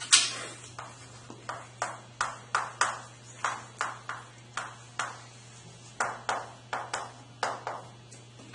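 Chalk writing on a chalkboard: a quick run of sharp taps and short scrapes, about two or three a second, the loudest right at the start. A steady low hum runs underneath.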